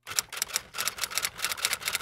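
Typewriter sound effect: a quick, irregular run of key clacks, several per second, accompanying animated title text.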